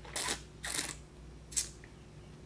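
Three short, hissy breaths, each a fraction of a second long.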